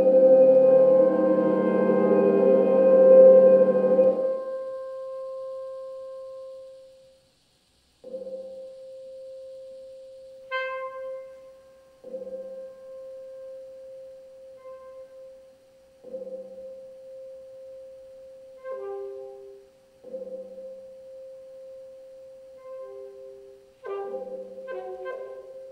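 Saxophone with live electronics: a dense layered chord fades out over the first few seconds, leaving one held tone that dies away. After a brief silence a phrase repeats every four seconds, a low note followed by a held tone, with short higher notes in between.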